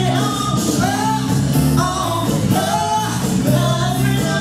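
A female singer performing live over a bass-heavy musical accompaniment, with about four short sung phrases over a steady bass line.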